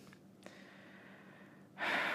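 A woman's audible breath out, starting suddenly near the end and trailing off slowly. Before it there is only faint room tone with a low steady hum.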